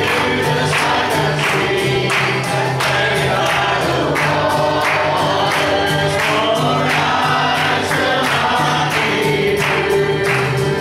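Live gospel music: a man singing and strumming an acoustic guitar, with several voices singing along over a steady beat of about two strokes a second.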